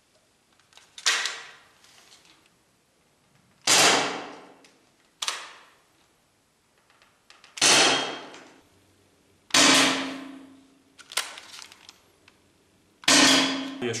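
Umarex T4E HDS68 double-barrel, CO2-powered paintball/pepperball marker firing five sharp shots, a couple of seconds apart, each ringing on in the echo of an indoor range, with two fainter sharp sounds in between.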